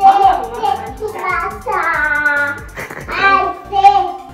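A song with a steady beat and a high child's singing voice, holding one long note around the middle.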